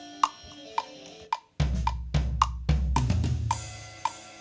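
GarageBand 'SoCal' drum-kit track kicks in about a second and a half in, a steady rock beat of kick, snare and cymbals. Before it, only a light click about twice a second.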